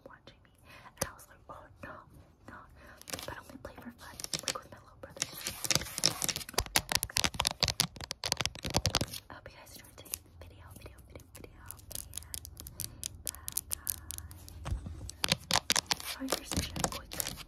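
Long fingernails tapping and scratching on a small hard object held right up to the microphone, making rapid, irregular clicks. The clicks are densest and loudest in the middle and pick up again near the end.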